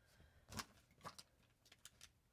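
Faint handling noises of paper sample cards and a foil sample sachet: a handful of brief soft rustles and clicks over near silence.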